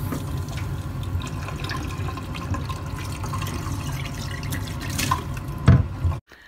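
Water running and splashing in a bathtub as a glazed rabbit water bowl is washed out with a sponge, with light clicks and knocks of the bowl and a louder knock near the end.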